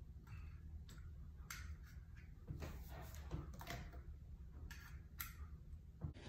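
Faint, irregular clicks and taps of a decorative metal clock dial being handled and pressed against a mirror, over a low steady hum.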